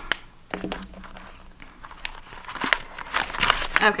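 Paper banknotes and a clear plastic binder pocket rustling and crinkling as a stack of cash is pulled out by hand, with scattered crackles that grow busier and louder near the end.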